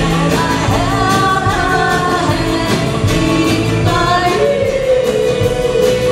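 Live rock-and-roll band playing: a singer over electric guitars and a drum kit beat, with one long held sung note over the last second and a half or so.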